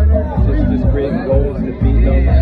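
Loud music with a heavy, steady bass, with voices talking over it.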